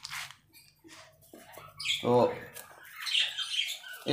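A quail held down in a hand gives a few short, high squawks.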